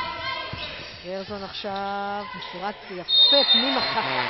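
Spectators chanting a repeated "na, na, na" in a sports hall while a basketball is dribbled on the hardwood court. Near the end comes a sudden loud, shrill high note, the loudest moment.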